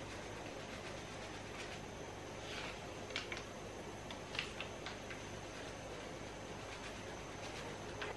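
Portable gas stove burner hissing steadily and faintly, with a few brief crinkles from a paper food packet being handled about three to four and a half seconds in.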